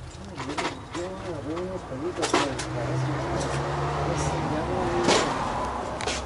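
A road vehicle's engine running, with a steady low hum in the middle of the stretch, under indistinct voices and a few sharp clicks.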